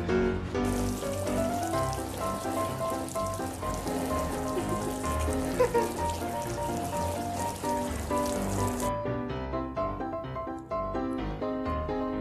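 Water showering down from above and pattering into a paddling pool like rain, a steady hiss that cuts off suddenly about nine seconds in, over background music with a steady melody.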